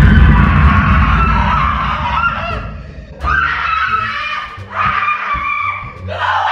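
A young woman screaming in pretend fright, in long wavering cries broken by short pauses. A loud, low thump right at the start, with music underneath.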